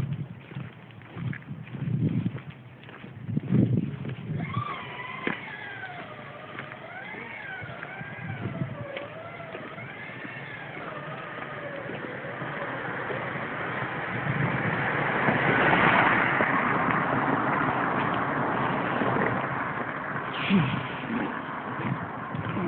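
A car passing on the street alongside: its road noise builds to a peak about two thirds of the way through and eases off. Before it, a wavering pitched sound rises and falls for several seconds.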